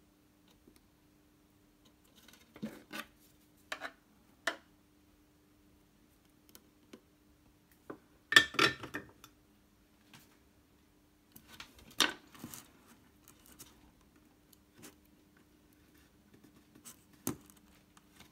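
Sparse sharp clicks and snips of a small hand tool working wire at the metal lugs of a guitar's three-way blade switch. The loudest comes about eight seconds in, over a faint steady hum.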